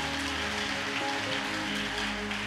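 Congregation clapping, a steady even patter, over soft background music of sustained chords.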